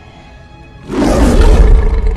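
A cartoon lion's roar from a film soundtrack played through a car's sound system. It bursts in about a second in, loud and with very heavy deep bass from the subwoofers.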